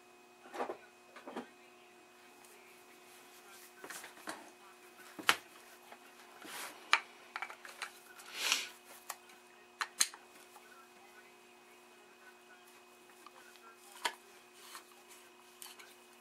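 Scattered small clicks and brief scrapes as the metal plug housing of a Philco Predicta CRT head cable and a screwdriver are handled while its Phillips screws are worked loose. The sharpest click comes about five seconds in, with a short scrape a few seconds later. A faint steady hum runs underneath.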